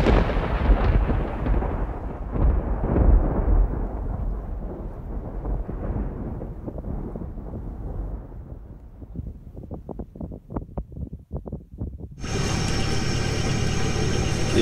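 A thunderclap followed by a long, low rolling rumble that slowly dies away, with a few short cracks near its end.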